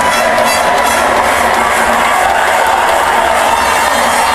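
A crowd of football fans cheering and shouting, a steady loud din. It is recorded through a small pocket camera's microphone that got wet, so the sound is poor and muddy.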